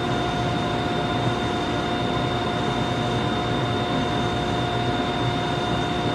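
Woodshop machinery running steadily: a constant hum with a steady whine and a thin high tone, unchanging throughout.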